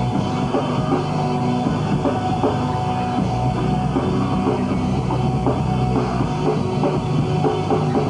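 Hardcore punk band playing live and loud without a break: electric guitars, bass guitar and a fast-hit drum kit.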